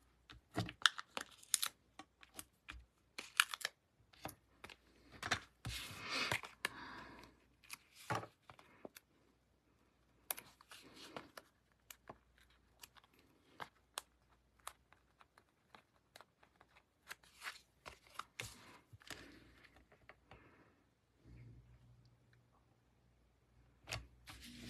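Foam adhesive dimensionals being peeled off their backing sheet and stuck onto cardstock, with cardstock being handled: a scatter of faint, irregular crackles, taps and short rustles.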